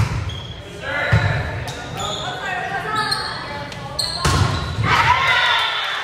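A volleyball being struck during a rally, with sharp hits at the very start, about a second in and around four seconds in, echoing in a gym. Girls' voices shout and cheer between the hits and are loudest near the end as the point is won.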